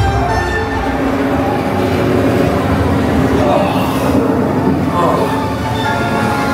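Ride vehicle rumbling along its track in the dark, with the attraction's orchestral score playing over it. There is a brief hiss about four seconds in.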